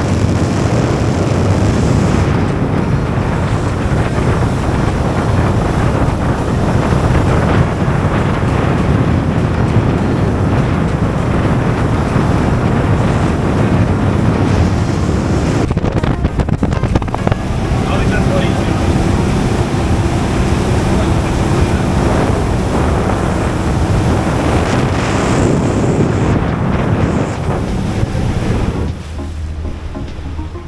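Motorboat running at speed: wind buffeting the microphone over the steady noise of the outboard motor and rushing water. The noise drops noticeably about a second before the end.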